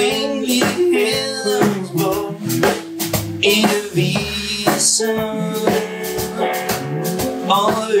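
Live blues trio playing: electric guitar over electric bass and a drum kit, with sustained and bending guitar notes over a steady rhythm. A sung "oh yeah" comes in near the end.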